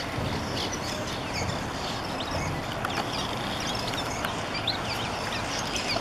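A colony of cliff swallows calling at their mud nests: many short, high chirps scattered throughout, over a steady background rumble.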